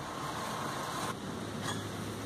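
Steady outdoor background noise: a low hum under an even hiss. A faint steady tone runs under it and stops about a second in.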